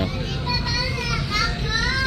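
Background voices in a busy shop, led by a high-pitched voice gliding up and down, over a steady low hum of room ambience.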